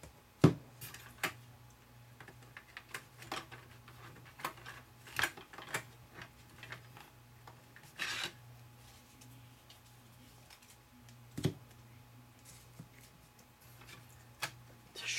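A stack of plastic cards being handled in and out of a plastic card-dispenser hopper: scattered light clicks, taps and rubs, with a sharp knock about half a second in and a longer scraping rustle a little past the middle. A steady low hum runs underneath.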